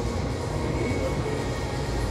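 A steady low rumble with no distinct knocks or events.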